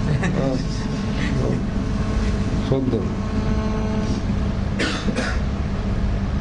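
A man's short, broken vocal sounds over a steady low hum, with two brief noisy bursts near the end.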